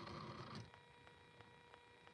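Near silence: a soft sound in the first half second, then a faint steady electronic tone with faint ticking about four times a second.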